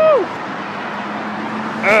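Steady road traffic noise from a busy roadside, a constant even rush with no single vehicle standing out.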